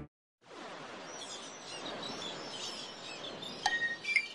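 Synthesized ambient sound effect, the arrangement's Seashore patch: a steady wash of surf-like noise with bird-like chirps above it. Near the end a click and a short pitched note sound as the music comes in.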